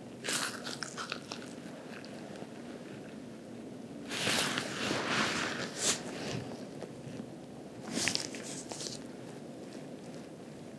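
Gloved hands pressing and rubbing over a cotton hospital gown during deep abdominal palpation: soft crinkly rustling and scratching in three bursts, about half a second in, between four and six seconds, and near eight seconds.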